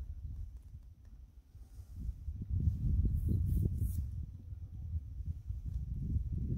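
Low, uneven rumble of wind on the microphone, growing louder about two seconds in.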